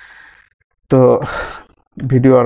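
A man's voice: a soft in-breath at the start, then one short voiced utterance about a second in.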